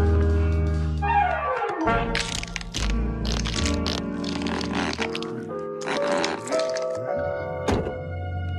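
Cartoon background music with slapstick sound effects. A falling pitch slide comes about a second in, then a run of short noisy hits, and a sharp knock near the end.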